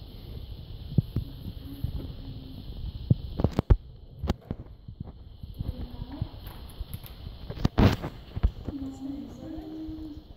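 Faint background voices in a room, with a scatter of sharp clicks and knocks from supplies and equipment being handled; the loudest knock comes near the eight-second mark.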